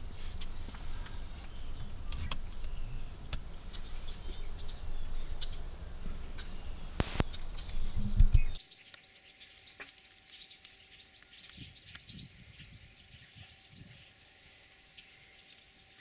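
Faint bird chirps over a steady low rumble, with a loud bump about eight seconds in. The rumble then stops abruptly, leaving a quiet background with a faint steady hum and occasional faint chirps.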